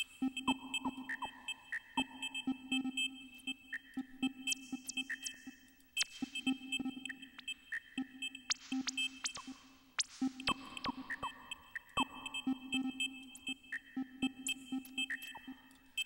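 Glitchy electronic drum pattern from a Reason 4 Redrum and Thor glitch-box patch: dense sharp clicks and short pitched bleeps, with a downward-sweeping zap about every two seconds.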